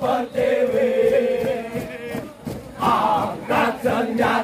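A large group of male police cadets singing a marching chant in unison while jogging in formation. A long held note fills the first half, then a new line starts about three seconds in.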